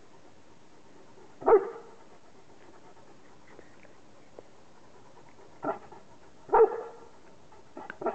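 Newfoundland dog giving short single barks: one about a second and a half in, a softer one and a loud one close together near six and a half seconds, and another at the very end.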